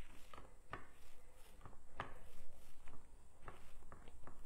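Foam paint roller being rolled back and forth in a plastic paint tray, working off excess paint on the tray's ridged section: faint rolling with a few light, irregular clicks and taps.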